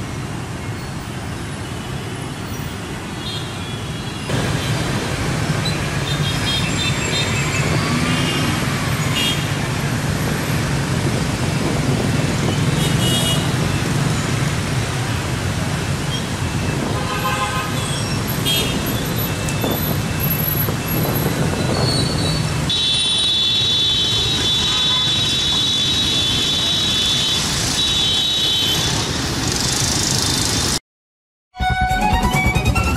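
Dense city traffic of motorbikes and cars, engines running in a steady din, with short horn toots throughout and one horn held for several seconds near the end.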